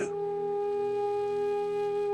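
Background music: one long held note, steady in pitch, with a fainter higher tone above it.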